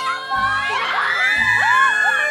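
A group of teenage girls squealing and shouting excitedly over one another, set over background music with a low beat about once a second.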